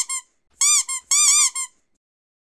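Cartoon-style squeak sound effect for a title-card transition: three quick bursts of short, high squeaks, each squeak rising and falling in pitch, the last burst the longest.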